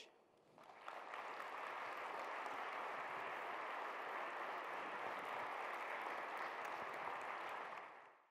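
Audience applause from a large seated crowd. It starts about half a second in, builds over the next half second, holds steady, and fades out at the very end.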